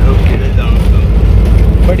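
Loud, steady low rumble of a moving bus heard from inside the cabin: engine, road and wind noise through an open window.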